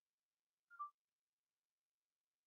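Near silence, broken once by a faint, brief sound just under a second in.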